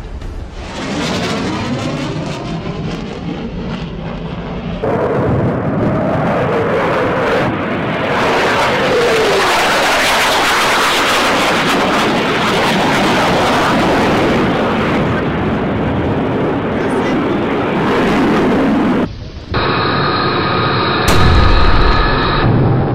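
Dense, loud action sound effects of explosions, gunfire and jet aircraft, thickening about five seconds in. Near the end they give way to a steady ringing electronic tone with a deep boom.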